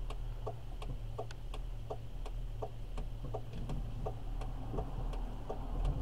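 Car turn-signal flasher clicking steadily, about three clicks a second, over the low hum of the engine, heard inside the cabin.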